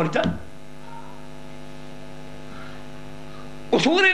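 Steady electrical mains hum from the microphone and amplification chain: a constant buzz with many even overtones, laid bare in a gap in a man's speech. His words end just after the start and resume near the end.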